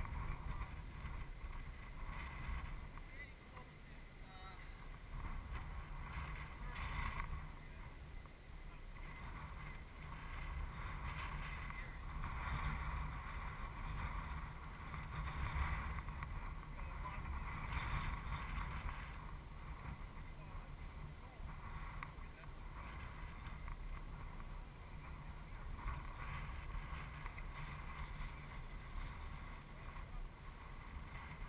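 Wind rumbling on the microphone outdoors, rising and falling, with faint distant voices now and then.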